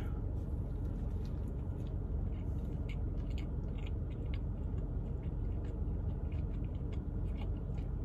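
Faint chewing of a mouthful of Spam biscuit with the mouth closed: soft, scattered wet clicks over a steady low hum.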